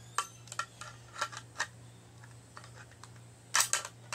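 Sharp plastic-like clicks and knocks from a makeup case being handled, its loose part that keeps falling out being fitted back in. A scatter of single clicks comes in the first second and a half, and a louder quick cluster near the end.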